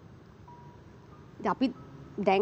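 A pause in studio conversation: quiet room tone with a faint brief steady tone, then a short spoken syllable or two about one and a half seconds in.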